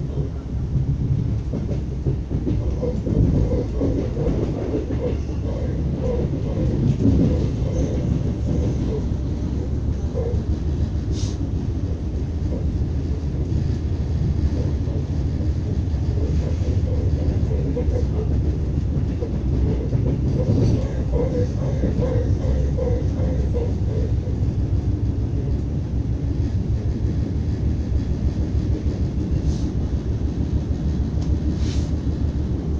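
ES2G Lastochka electric train running at speed, heard from inside the carriage: a steady low rumble of wheels on rail. Three short sharp clicks stand out, spread through it.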